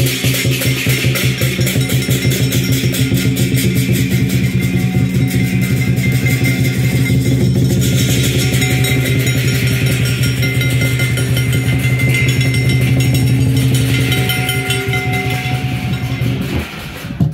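Chinese lion dance percussion: a drum beating a fast, even rhythm with cymbals and gong, accompanying the lion dance.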